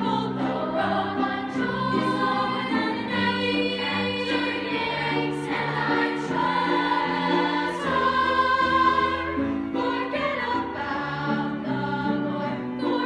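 A choir singing a sustained song in several parts, with notes held and changing together, growing louder about eight seconds in.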